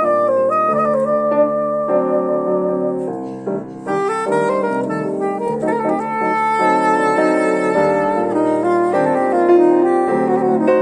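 Soprano saxophone and piano playing a jazz piece together, the saxophone carrying the melody over piano chords. The music dips briefly a little over three seconds in, then picks up again with quicker notes.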